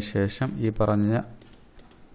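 A man's voice speaking for about a second, then a few light clicks at the computer.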